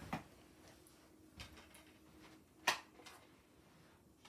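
A few faint clicks and knocks from a plastic Blu-ray case being handled, the sharpest about two and a half seconds in.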